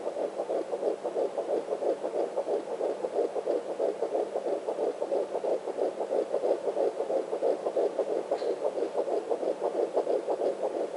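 Fetal heartbeat picked up by a Sonotech Pro handheld fetal Doppler and played through its speaker: a fast, steady run of rhythmic whooshing pulses from the baby's heart.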